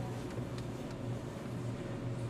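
Room tone: a steady low hum under faint background noise, with no speech.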